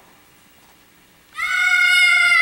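Quiet room tone, then, about a second and a half in, a loud held high-pitched tone starts with a slight upward slide and stays steady.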